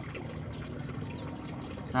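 Water trickling steadily at a low level, with faint small drips.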